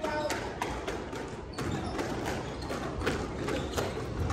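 A squash rally: a series of sharp knocks as the ball is struck by the racquets and hits the walls, with sneakers on the wooden floor.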